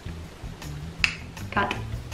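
A sharp finger snap about a second in, over quiet background music.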